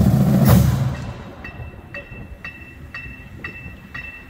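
A marching drumline's bass and snare drums end a passage with a last hit about half a second in, which rings off. Then a metronome ticks steadily at about two clicks a second, each with a short high beep.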